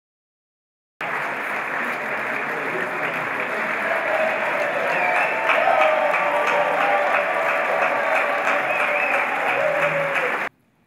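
Audience applauding, starting abruptly about a second in and going on steadily, with voices calling out over the clapping in the middle.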